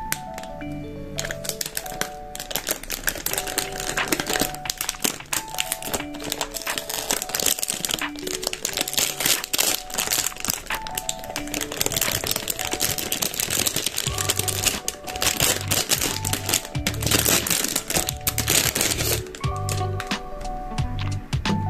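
Clear plastic wrap and protective film crinkling and crackling as it is pulled off an acrylic phone stand by hand, over soft background music with a melody and, in the second half, a bass line.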